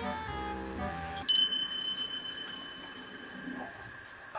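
Light background music that stops about a second in, replaced by a single high bell-like ding, an edited-in sound effect, that rings on and fades away over about two seconds.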